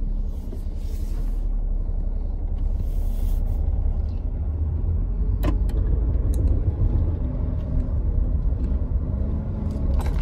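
Steady low rumble of a car's engine and road noise heard from inside the cabin while driving, with a single click about five and a half seconds in.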